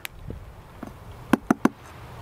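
Three quick raps on the side of a white wooden beehive box, a little over a second in. This is a beekeeper's tap test: knocking on the hive to hear whether the colony answers with a buzz.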